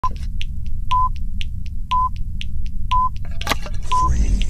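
Countdown sound effect: a short, high electronic beep once a second, with quicker clock-like ticks between the beeps, over a steady low rumble. A brief swish comes near the end.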